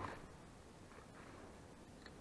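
A brief soft swish right at the start as a spinning rod is cast, then near silence.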